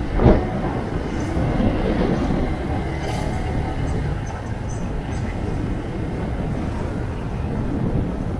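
Motorcycle running along a street: a steady low rumble of engine, road and wind noise buffeting the microphone, with a brief louder gust just after the start.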